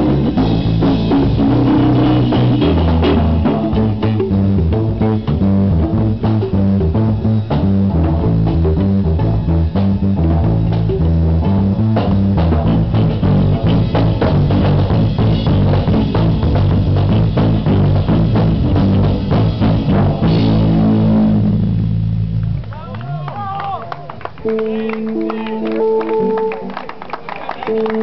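Live jazz trio playing: electric archtop guitar, keyboard and drum kit, with the drums prominent. The band stops about 22 seconds in.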